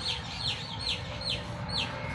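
Small birds chirping: short high chirps that fall in pitch, repeated every half second or so.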